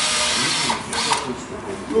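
Electric drill boring into a wooden log to make holes for mushroom spawn plugs. It runs for most of the first second, stops, then gives a shorter burst about a second in.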